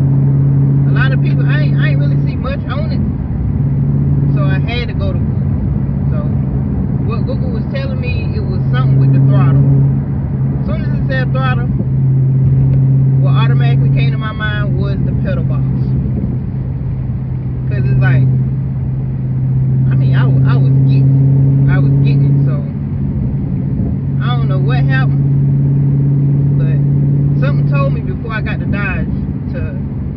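Dodge Charger Scat Pack's 6.4-litre 392 HEMI V8 heard from inside the cabin at highway cruise: a steady low drone that cuts in and out every few seconds, with road noise beneath it.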